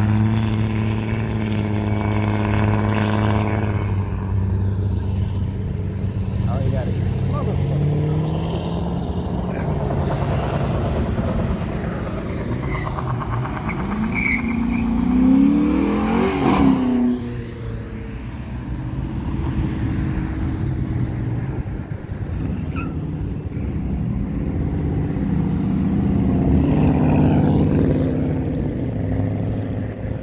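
Car engines running on the road, a low steady drone for the first several seconds. About fifteen seconds in, a Dodge Charger accelerates past, its revs climbing sharply before the sound drops away suddenly.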